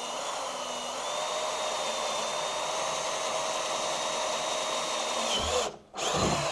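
Cordless drill boring through the wall of a plastic barrel: a steady motor whine that steps up slightly in pitch about a second in, then winds down and stops near the end.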